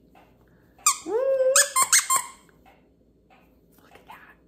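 Squeaker inside a plush candy-corn dog toy being squeezed: one long squeak that rises in pitch and holds, then a couple of quick short squeaks.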